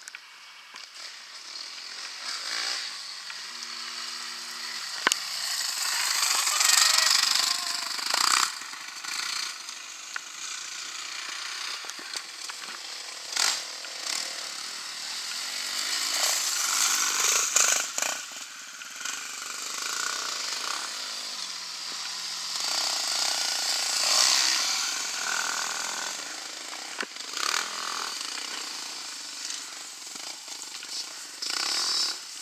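Off-road motorcycle engines revving as dirt bikes race past on a dirt course, the sound swelling and fading as each bike goes by, loudest about seven, seventeen and twenty-four seconds in.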